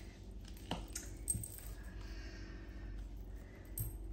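A few faint, light clicks and taps of tarot cards being picked up and handled on a table, over a low steady room hum.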